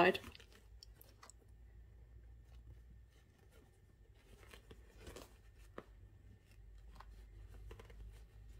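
Faint rustling of cotton fabric and lining being folded and handled while the layers of a pouch are pinned, with a few light ticks scattered through, one a little sharper near the six-second mark.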